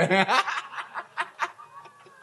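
A man laughing into a handheld microphone in short, breathy snickers that fade out over about a second and a half.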